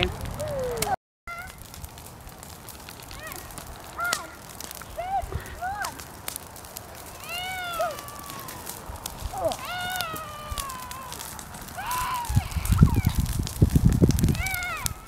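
Burning blackberry brush crackling, with scattered short high-pitched calls that rise and fall. A low rumble comes in near the end.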